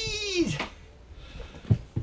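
A man's high-pitched, drawn-out vocal cry, held on one note and then falling away about half a second in. A couple of short soft knocks follow.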